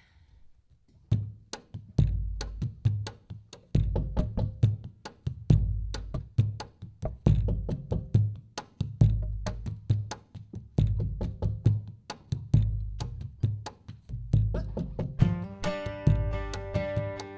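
A drum beat opens the song: low kick-drum thumps with sharp clicks over them in a steady rhythm, starting about a second in. Near the end acoustic guitars and other strings come in.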